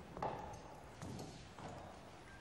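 Carriage horses' hooves clopping on hard paving: three separate strikes, the first the loudest.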